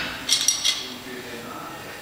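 Three or four quick metallic clinks from a Rolling Thunder grip handle rig (handle, cable and loading pin loaded with bumper plates), heard just after a set-down of the weight whose ring is fading at the start.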